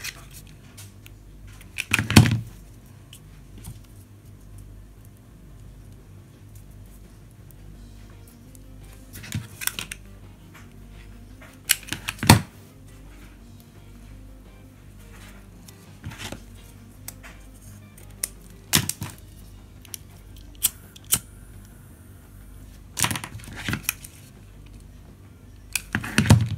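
Scattered sharp clicks and snaps of a metal alligator hair clip being opened and fitted with grosgrain ribbon, over the steady low hum of a tumble dryer running in the background.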